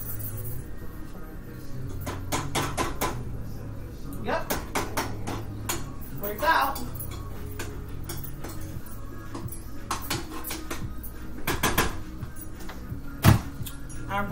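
Metal kitchenware handled at a stove: a tin can and cooking pots clinking and knocking. A scattered string of clicks and taps ends in one sharp, loud knock near the end.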